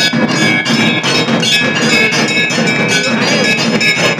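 Temple bells struck rapidly and continuously during a Hindu aarti, many ringing tones overlapping into a loud, dense clangour.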